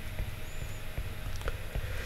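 Faint, light ticks of a stylus writing on an iPad screen, over a low steady microphone hum.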